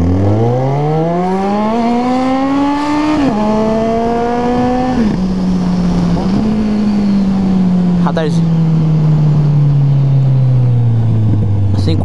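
Motorcycle engine running on a bare exhaust pipe with the muffler removed, revving hard as the bike pulls away. The pitch climbs steeply, drops at an upshift about three seconds in, climbs again to a second upshift about five seconds in, then holds and slowly falls as the bike cruises.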